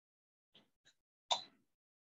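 Dead silence from a video call's audio dropping out on an unstable internet connection, broken by two faint clicks and one short soft pop about a second and a quarter in.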